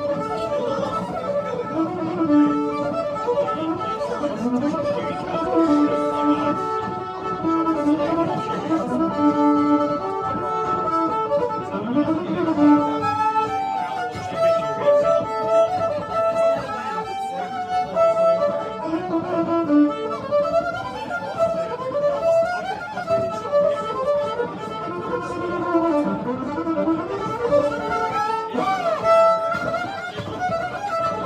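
Fiddle bowed live into a microphone, playing a continuous tune of held notes with slides between some of them.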